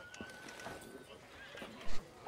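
Faint horse ambience: a horse neighing once in a thin, held call lasting about a second, with faint voices underneath, and a brief louder sound just before the end.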